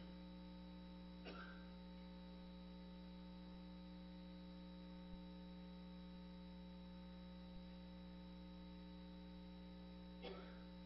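Near silence during a silent prayer: steady electrical mains hum from the sound system, with a faint brief sound just over a second in and two tiny clicks later.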